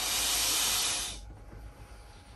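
Air pump forcing air through its hose into a large inflatable: one stroke of rushing air lasting about a second, then a pause.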